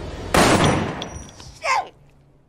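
A gunshot, sudden and loud, its sound trailing off over about a second, followed by a brief voice near the end.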